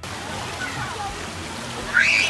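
Swimming-pool ambience: a steady wash of splashing water with faint voices of people and children in the background.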